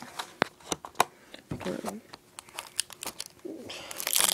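Packaging of a wire puzzle set being opened by hand: crinkling and tearing with a scatter of sharp clicks and rustles.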